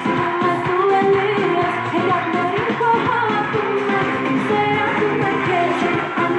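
A woman singing an Armenian pop song over band accompaniment, the vocal melody continuous throughout.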